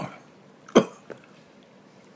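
A man's short cough, loudest once about three quarters of a second in, with a fainter one at the start and a small one just after.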